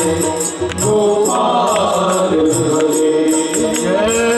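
Hindu devotional bhajan sung by a group of men in unison over a harmonium, with a hand drum and jingling percussion keeping a steady beat.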